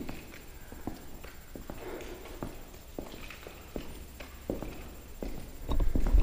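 Footsteps walking on a hard tiled floor, a sharp step a bit more often than once a second. A loud low rumble comes in near the end.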